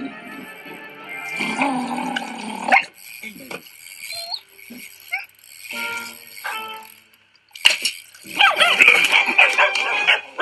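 An animated film's soundtrack: a cartoon dog barking over background music, loudest in the last two seconds.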